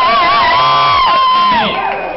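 Crowd cheering and whooping, with long wavering whoops sliding up and down in pitch; it dies down near the end.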